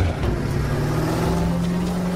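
Film soundtrack of a battle scene: a low, steady engine-like drone that rises a little in pitch in the first second, then holds.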